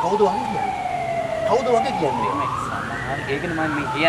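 A wailing siren, its pitch sliding slowly down, rising again about halfway through and falling once more near the end, with men talking under it.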